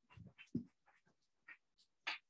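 Faint, scattered rustling and a couple of soft knocks of papers and small objects being handled at a table, with no speech.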